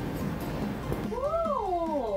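A woman's long, drawn-out "woah" of amazement, starting about a second in, rising and then sliding down in pitch, over quiet background music.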